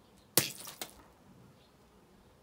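A raw hen's egg dropped onto stone paving, its shell cracking and its contents splatting in one sharp smack about a third of a second in, with a smaller splat just after.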